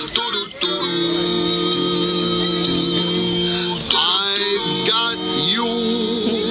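The skeleton show's song playing over loudspeakers: a held chord with guitar and wavering sung notes, then voices sliding up and down from about four seconds in.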